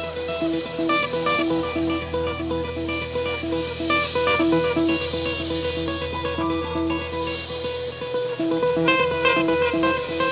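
Live rock band playing an instrumental intro. An electric guitar picks a repeating figure, with one note struck about three times a second and higher notes moving above it, over a steady low drone.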